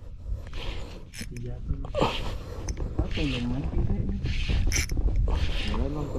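Spinning reel working against a hooked fish on a light jigging rod, its mechanism coming through as repeated short bursts of reel noise over a steady low rumble of wind on the microphone. There is a brief voiced sound about halfway through.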